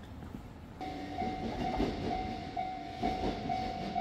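Railway level-crossing warning bell ringing, a steady repeated ding about twice a second, starting abruptly about a second in: the signal that a train is approaching and the barrier is about to come down.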